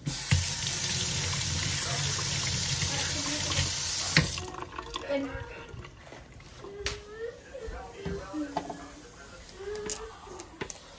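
Kitchen faucet running into a stainless steel sink, water splashing over a tomato held under it, shut off abruptly about four seconds in. Quieter handling sounds follow.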